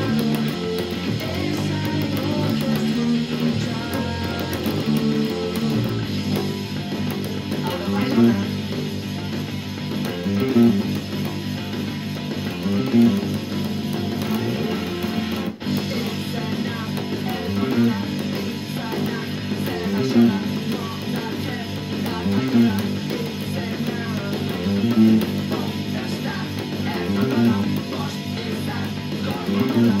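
Electric bass guitar played fingerstyle with a clean, direct signal, under a rock band track with electric guitars. A riff repeats about every two and a half seconds, and the sound drops out for an instant about halfway through.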